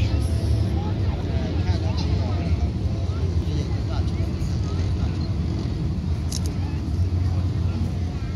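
Steady low drone of a boat's engine, with faint chatter of people's voices over it.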